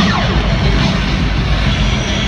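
Loud pregame intro music over an arena's sound system, with heavy bass. A sound effect sweeps steeply down in pitch right at the start.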